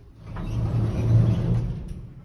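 Elevator machinery running: a low motor hum with a rushing noise over it. It swells to a peak about a second in, then fades away.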